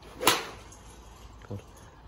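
Golf iron striking a ball off a driving-range mat: one sharp crack about a quarter of a second in, with a short fading tail.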